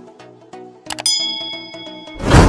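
Computer-mouse click sound effect followed by a bright bell ding that rings out and fades over about a second, over soft background music.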